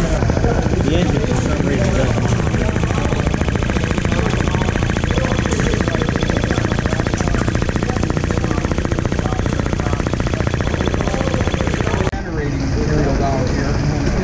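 A small engine running fast, its firing strokes making a rapid, even chatter with voices in the background. It cuts off abruptly about twelve seconds in.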